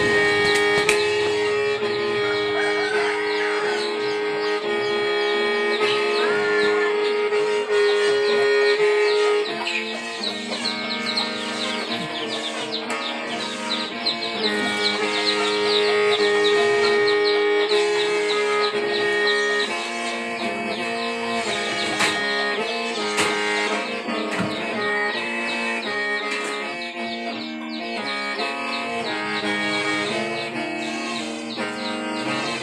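A Hmong qeej, the bamboo free-reed mouth organ, being played: several reed pipes sound together in held chords over a steady drone, the notes shifting through a continuous phrase.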